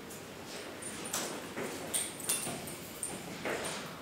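Faint room sounds from chairs being handled: a few scattered soft knocks and short squeaks.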